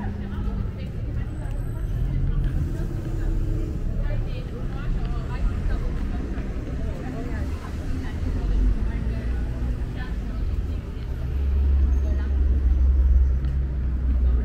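Busy city-street ambience: passers-by talking over a steady hum of traffic. A deeper, louder rumble builds near the end.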